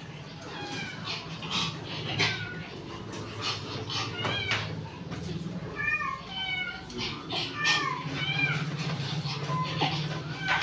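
A dog whining in many short, high cries that rise and fall, coming in quick runs, over a low steady hum.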